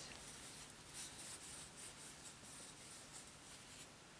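Faint scratchy rustle of yarn sliding over a crochet hook and through the fingers as double crochet stitches are worked.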